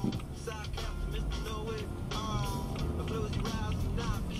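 Radio music with a singing voice, over the low steady rumble of the car's engine and tyres as it pulls forward.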